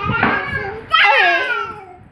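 Speech only: a young child talking in a high voice, two short phrases, the second starting about a second in.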